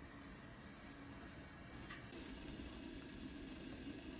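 Faint bubbling of a thick piloncillo and cinnamon syrup (melado) boiling in a steel pot, a little louder after about two seconds.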